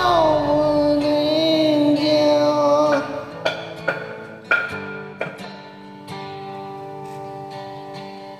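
Karaoke singing over a rock-ballad backing track: a man holds a sung note for about three seconds, then the backing track's acoustic guitar plays plucked chords alone, quieter.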